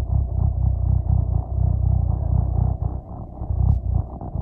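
Low, uneven rumble inside a moving MTA city bus: engine and road noise, heaviest in the bass.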